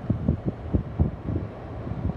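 Wind buffeting the phone's microphone in irregular low rumbling gusts.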